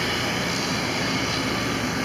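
Street traffic: a car approaching along the road, a steady noise of tyres and engine.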